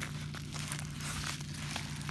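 Paper mailing envelope crinkling and rustling in the hands as it is torn open and handled, many small crackles over a steady low hum.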